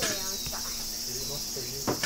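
A steady, high-pitched chorus of insects, with faint voices in the background and a short knock near the end.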